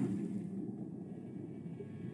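Low ambient rumble from the soundtrack, slowly fading.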